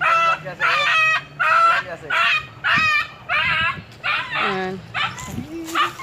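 A stray dog crying out over and over in short, high-pitched cries of about half a second each, with a lower, rising cry near the end.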